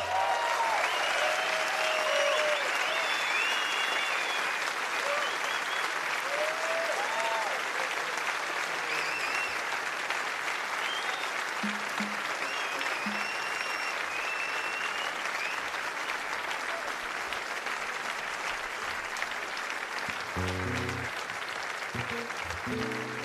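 Large concert audience applauding at the end of a piece, with cheers rising and falling over the clapping. The applause slowly fades, and about twenty seconds in a nylon-string flamenco guitar starts playing again.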